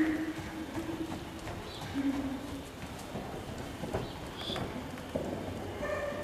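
A horse walking on the sand footing of an indoor riding arena, its hoofbeats landing as soft, irregular knocks.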